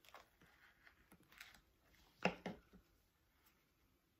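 Quiet handling sounds of a knife cutting into a chili pepper pod on a cutting board and the pod being pulled open: faint scrapes and ticks, with two sharper knocks a little after two seconds in.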